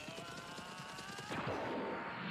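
Anime fight sound effects, heard quietly: a fast barrage of punch-like impact hits with a faint held tone underneath, then about 1.4 s in a whooshing rush and a steady high tone.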